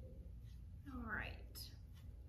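A woman's soft, brief vocal sound with a rising pitch about a second in, over a low steady hum.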